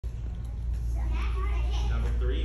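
Children's voices talking, starting about a second in, over a steady low hum.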